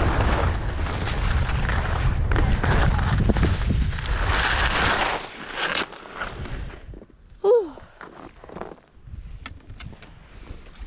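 Skis sliding and scraping through snow, with wind buffeting the microphone, for about five seconds; then the noise drops away as the skier slows and stops. About two and a half seconds later comes a short, loud vocal exclamation, followed by a few faint small sounds.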